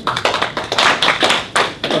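Applause from a small group: hand claps heard individually as a quick, uneven patter.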